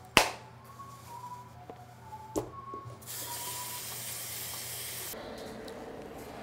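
A flip phone snapped shut with one sharp click, with a softer click about two seconds later, over faint soft music notes. About three seconds in, a steady hiss starts and stops abruptly about two seconds later.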